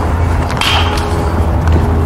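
Steady low rumble and hum of outdoor background noise, with a faint short swish about half a second in.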